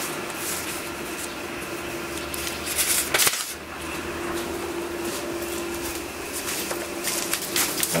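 Steady hum of a large Océ photocopier running while it warms up, with a few short clicks and knocks about three seconds in and again near the end.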